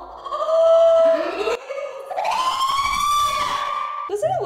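A woman's long, high-pitched shriek, held steady, cut off about a second and a half in, then a second shriek that rises in pitch and is held to the end.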